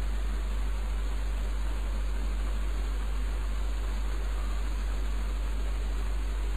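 Steady background hiss with a constant low hum underneath and nothing else.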